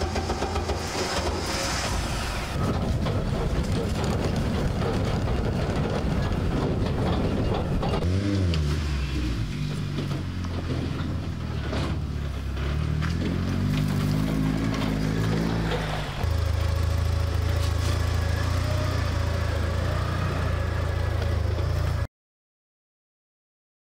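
Recycled car engine in a homemade evacuation buggy running. Its pitch drops about eight seconds in, then climbs and falls again as it is revved. After a sudden change it settles into a steadier drone for the last few seconds.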